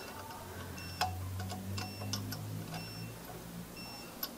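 Faint scattered metallic clicks and ticks of a small flat wrench working the anti-theft lock nut of a valve-cap TPMS sensor on a tyre valve stem, the sharpest click about a second in.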